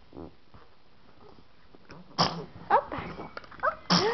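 A baby sneezing: two short, sharp sneezes, one about two seconds in and one right at the end, with brief pitched squeaks of a voice between them.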